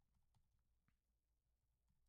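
Near silence: faint room tone with a low hum and a few very faint ticks.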